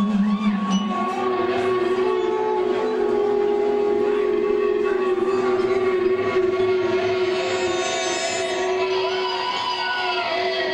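A live band playing a slow instrumental intro with long, steady droning notes and acoustic guitar, no singing.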